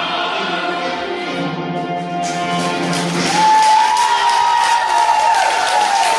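Children's choir singing with musical accompaniment, ending on a long, high held note. Clapping starts up about two seconds in and carries on under the final note.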